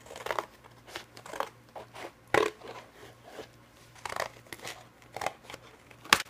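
Scissors cutting through stiff, glued layers of box cardboard. There are about ten short snips, roughly half a second apart, and one about two and a half seconds in is louder than the rest.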